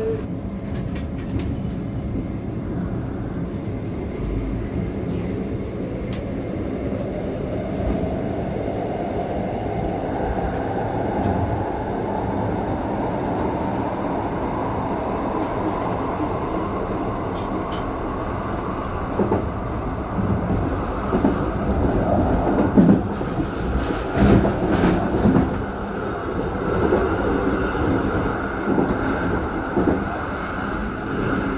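Electric regional train of the Rhaetian Railway getting under way: a motor whine rising steadily in pitch over the wheel rumble as it gathers speed. In the second half, louder clatter and knocks as the wheels run over a series of points.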